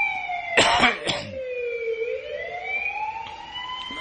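Emergency vehicle siren wailing, its pitch sliding slowly down and then back up. Someone coughs loudly twice about half a second in.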